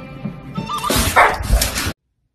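A dog barks loudly over background music about a second in, and the sound cuts off abruptly just before the end.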